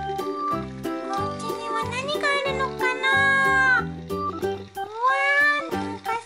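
Children's background music with a steady beat and long gliding melody notes, in a cat-like, meowing voice or synth line.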